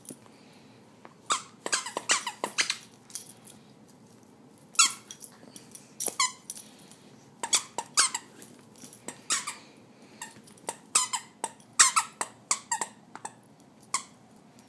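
A pink plush squeaky toy squeaking over and over as a chihuahua bites and chews it: short high squeaks in irregular bursts of a few at a time, every second or two.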